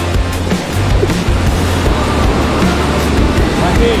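Background music with a steady beat and a held bass line.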